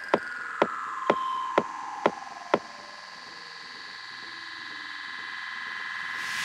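Techno track in a breakdown: sustained synth tones, one gliding down in pitch, over a sharp click about twice a second that stops about halfway through. Then a hiss-like riser swells, building up toward the full beat.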